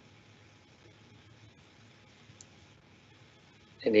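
Near silence: faint steady hiss of an online-meeting audio line, with one tiny click about two and a half seconds in. A voice starts speaking right at the end.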